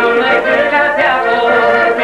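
A man singing an Aromanian folk song, his voice loud and steady with gliding pitch.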